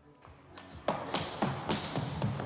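Quick running footsteps on a hard floor, starting about half a second in at about four steps a second, over a sustained film score.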